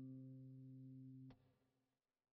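The last held notes of soft plucked-string background music dying away, ended by a faint click about two-thirds of the way through, then near silence.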